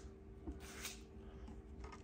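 Quiet room tone with a faint steady hum, and a couple of soft rustling handling noises about half a second to a second in.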